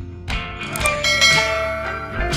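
Background music with a bell-like chime sound effect ringing over it, several held tones starting about a third of a second in.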